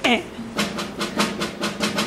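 Snare drum playing triplet figures: a quick run of sharp strokes starting about half a second in, with the triplets dragged out to fill the beat, over a low held note from the ensemble.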